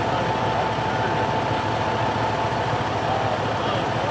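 An engine running at idle, a constant high whine over a low steady rumble.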